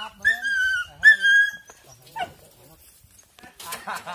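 Hunting dogs whining: two high, drawn-out whines that fall slightly in pitch, then a short one about two seconds in. Voices come in near the end.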